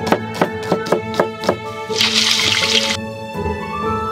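A cleaver chopping green onions on a wooden cutting board, a crisp knock about three times a second for the first second and a half; then about a second of loud sizzling as a whole pomfret is lowered into hot oil in a wok, cutting off sharply. Background music plays throughout.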